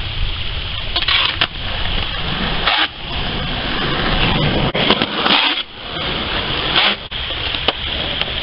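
Wind buffeting the microphone in a continuous rough rumble, with skateboard sounds on concrete: brief stretches of wheel roll and a few sharp clacks of the board.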